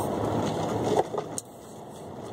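Steady road and engine noise inside a moving car's cabin, which drops sharply about one and a half seconds in.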